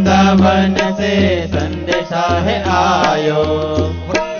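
Devotional bhajan music: a man's voice singing over a steady drum beat.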